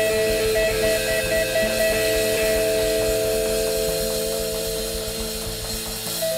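Live blues band playing an instrumental passage: electric guitar holding long notes over drums and bass.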